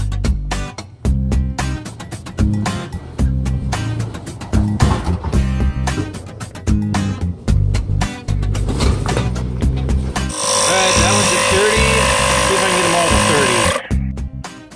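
Background music with a steady beat. About ten seconds in it cuts to the loud, steady running of the Stanley Jump It jump starter's built-in air compressor, pumping a tire back up after airing down.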